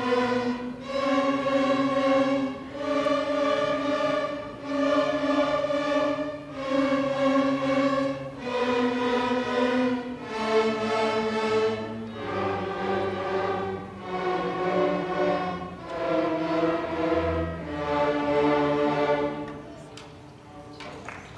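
Youth string orchestra with cellos bowing slow, sustained chords, each held about two seconds and stepping from one to the next. The last chord fades away just before the end as the piece finishes.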